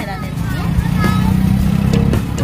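Engine and road noise of a moving open-sided passenger vehicle, heard from a seat inside: a steady low rumble that starts just after the cut.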